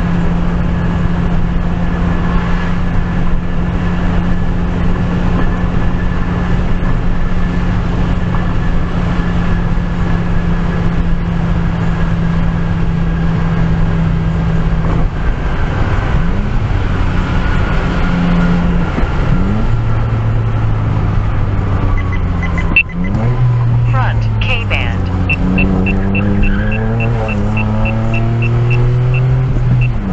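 A car's engine and road noise heard from inside the cabin while driving. The engine hum is steady for the first half, then its pitch rises and shifts several times around the middle. In the last few seconds a rapid, even, light ticking joins in.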